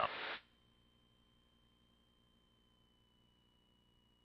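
A voice cuts off in the first half-second, then near silence on an aircraft intercom feed: faint hiss with a thin, steady high-pitched whine and a fainter lower one, sinking very slightly in pitch. No engine noise comes through.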